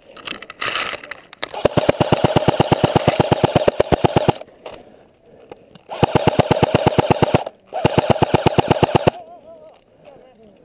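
AK-style airsoft rifle firing full-auto in three bursts: a long one of about two and a half seconds, then two shorter ones a moment apart. Each burst is a rapid, even rattle of about fifteen to twenty shots a second.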